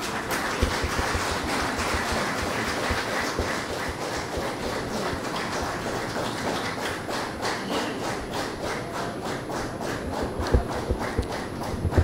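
Audience applauding in a hall: dense, steady clapping that thins out into fewer, separate claps near the end.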